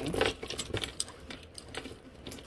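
Rummaging by hand inside a leather handbag: a run of quick rustles and small metallic clicks and jingles.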